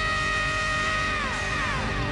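Live reggae band playing: a held high chord over the drums and bass slides down in pitch about a second and a half in.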